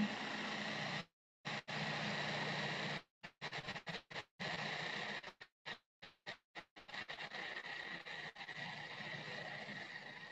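Food processor motor running while blending a thick purée, heard faint and muffled, the steady hum cutting out to silence several times.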